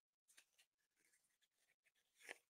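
Near silence: a pause in speech with only faint room tone.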